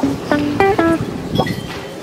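Background music: a guitar picking a quick run of single plucked notes.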